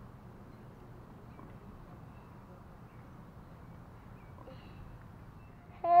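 Faint steady outdoor background noise with no distinct sound events. A voice calls "hey" right at the end.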